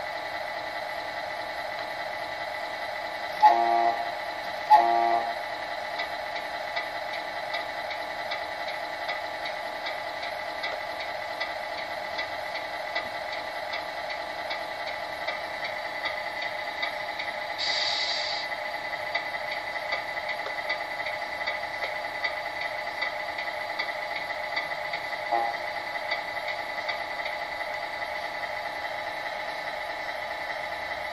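Electronics of a Tamiya Actros RC model truck: a steady electronic hum with a fast, even ticking. Two short beeps come a few seconds in, and a brief hiss about halfway through.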